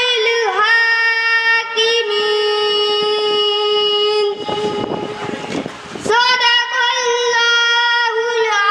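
A boy reciting the Quran in drawn-out melodic qirat through a microphone, holding long high notes with slow bends in pitch. Just past the middle the voice breaks off for about a second and a half, leaving a breathy hiss, then the recitation resumes.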